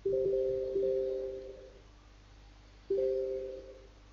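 Telegram Desktop message notification chime sounding three times, twice close together at the start and once about three seconds in; each is a two-note tone that fades over about a second.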